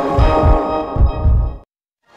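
Electronic logo ident music for the BP logo: held synthesizer chords over deep, low thumps that come about four times. It cuts off abruptly about one and a half seconds in, leaving silence.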